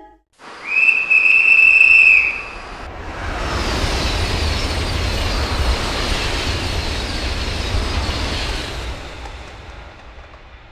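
A single high, steady horn note lasting about a second and a half. Then a high-speed train passes at speed: a loud rushing of air and wheels over a deep rumble, dying away near the end.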